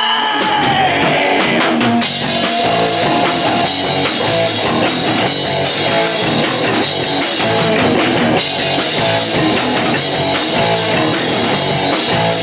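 Live rock band playing an instrumental passage: electric guitars and a drum kit keep up a loud, steady beat, with no singing.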